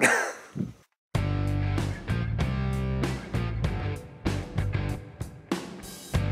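A man's brief laugh, then background music with guitar cuts in abruptly about a second in and runs with a steady beat.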